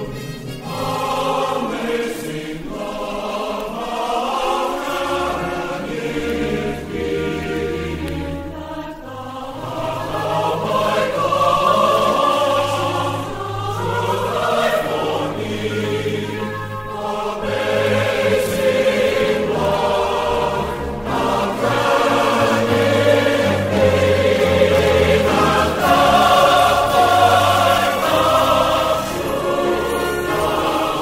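Choral music from a vinyl LP recording: a choir singing sacred music over instrumental accompaniment with long held bass notes. It grows louder about a third of the way in and stays full to the end.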